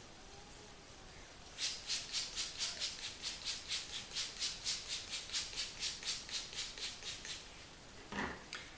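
Finger-pump fine-mist spray bottle of hair spritz pumped rapidly, a quick run of short hissing sprays about five a second, starting about a second and a half in and stopping near the end.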